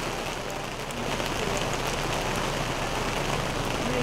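Steady rain, an even hiss with scattered faint drop ticks, picked up by an outdoor sports-broadcast microphone.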